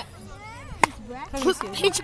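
A single sharp click a little under a second in, then voices talking near the end.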